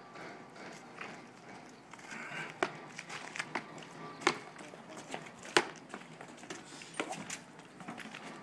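Footsteps on pavement, then scattered sharp clicks and clanks from a metal door's handle and latch being worked, about half a dozen separate knocks over several seconds, the loudest two in the middle.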